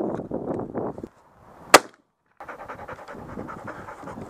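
A single shotgun shot about one and three-quarter seconds in, sharp and loud, over a rough rumble of wind on the microphone. The sound cuts out completely for about half a second just after the shot, then the wind rumble returns.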